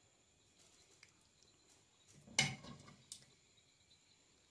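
A serving ladle scooping sauce from an aluminium cooking pot, with one loud clank against the pot about halfway through and a lighter click soon after. Otherwise quiet, with a faint high steady whine.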